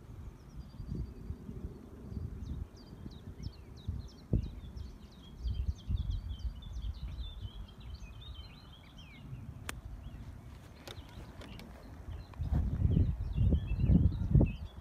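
Birds singing in quick, repeated chirps over a low rumble of wind on the microphone; the rumble gets louder near the end. A single sharp click comes about ten seconds in.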